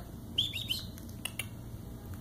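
Bird-like chirping: three quick, high, downward-sliding chirps about half a second in, followed by a couple of faint clicks.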